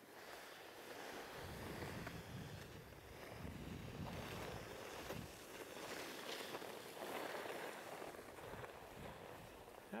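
Skis sliding over packed snow, with wind rushing across the camera microphone while skiing downhill. It is a steady hiss that rises and falls in level, with low rumbling gusts in the first half.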